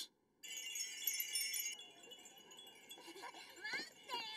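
A wind chime ringing, several clear high tones together, starting about half a second in and fading away within about a second and a half. A faint voice follows near the end.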